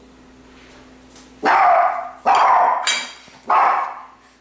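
A dog barking three times, loud, each bark lasting about half a second.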